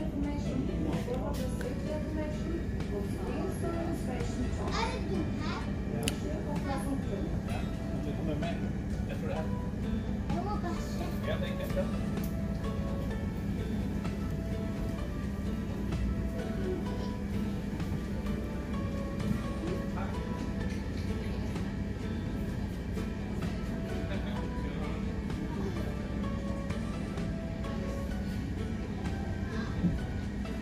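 Steady low drone of a ferry's engines under way, with indistinct voices, mostly in the first half, and music.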